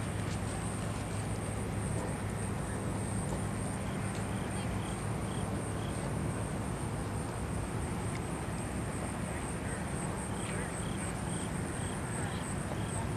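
Outdoor ambience: a steady high-pitched insect chirring with an even pulse, over a low hum that fades about halfway through and a constant wash of noise.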